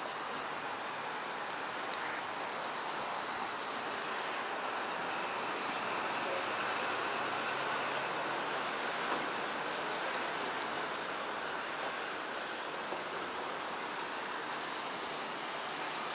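Steady outdoor town-street ambience: a continuous rushing noise of traffic and air, swelling slightly in the middle.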